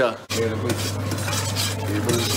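Dishes and cutlery clattering over a steady low hum, starting abruptly just after the start, with faint voices in the background.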